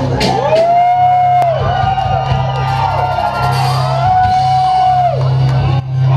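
Live rock band playing in a hall, with audience members whooping over a steady low hum from the stage.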